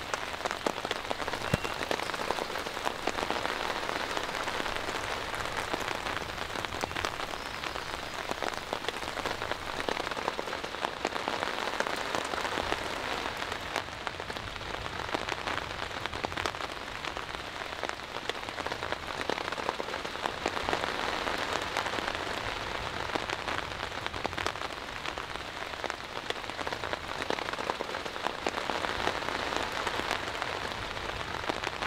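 Steady rain, with many separate drops ticking sharply over the even hiss of the downpour.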